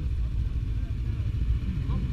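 Snowmobile engine running at idle, a steady low rumble.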